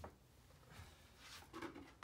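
Near silence, broken by a faint knock at the start and a few faint scratchy strokes near the end: a tool beginning to scrape wet acrylic paint off the paper.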